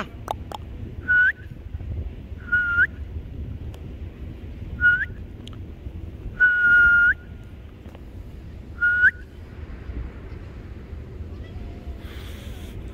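A person whistling to call a cat over: five separate whistles, each a steady note that flicks upward at the end, the fourth held noticeably longer.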